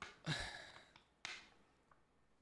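A soft, breathy sigh, then a brief faint brush of a clear plastic card sleeve being handled a little over a second later.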